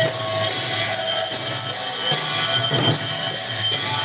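Devotional arati music: bells and hand cymbals ringing continuously over a steady drum beat, with sustained tones underneath.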